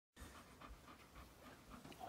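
Golden retriever panting faintly, soft quick breaths about three a second.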